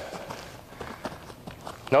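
Quick, faint footfalls and foot plants of an athlete's shoes on artificial turf, shuffling side to side and running at full speed.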